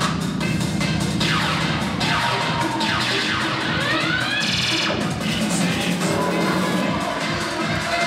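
Cheerleading routine music mix playing, with sweeping falling pitch glides about a second in, rising glides around three seconds in, and a brief buzzing stutter effect just after.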